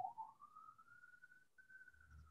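A faint, single whistle-like tone that rises over the first second, holds, and then slowly sinks, with a brief break in the middle.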